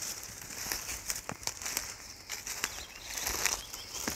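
Footsteps of a walker and a dog crunching and rustling through dry leaf litter and twigs, in irregular scattered crackles.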